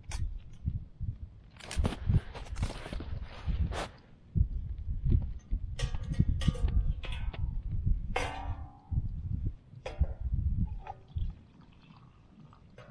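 Close handling noises as a tea bag is unwrapped at a campfire: paper crinkling and rustling about two seconds in, with scattered taps and clicks. A few short squeaky pitched sounds come in the middle, one falling in pitch.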